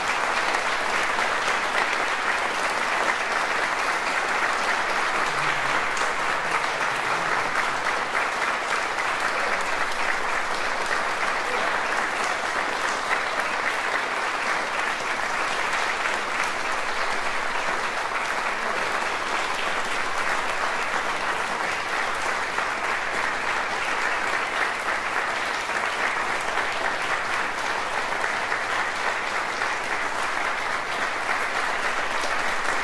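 Audience applauding steadily and without a break.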